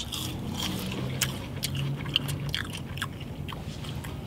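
Two people chewing crispy seasoned Taco Bell Nacho Fries with their mouths close to the microphone. Bites and crunches come as many short, irregular clicks.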